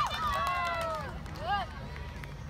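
Children's voices shouting as a cheer dies away: a long falling call in the first second, then a short call about one and a half seconds in.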